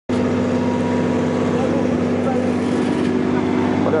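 Engine of road-paving machinery running with a steady, even drone while fresh asphalt is being laid.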